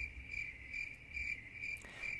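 Crickets chirping, an even chirp a little over twice a second, the comic sound effect for an awkward silence after a joke.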